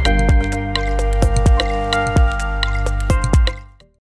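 Short electronic outro jingle: sustained synth chords with a run of quick plucked notes, each dropping sharply in pitch, fading out about three and a half seconds in.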